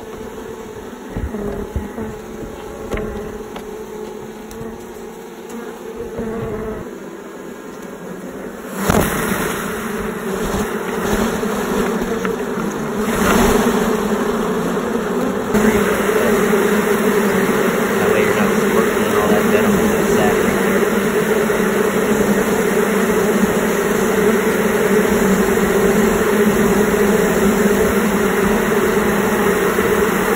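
Carniolan honeybees buzzing close around a phone set inside the hive. The buzz grows louder about nine seconds in and fuller again from about sixteen seconds, as more bees fill the hive.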